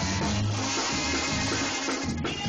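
Mexican banda music playing without singing: brass and drums over a steady bass line.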